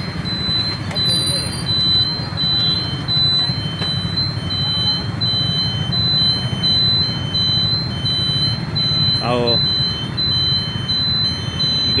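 Motorcycle and traffic engines running steadily, with a high electronic beep repeating at an even rate. A short voice breaks in near the end.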